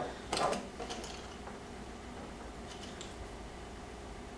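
Hands handling tools and small wire and tubing on a workbench: a short clatter about half a second in, then faint light rustling and ticking over a steady low room hum.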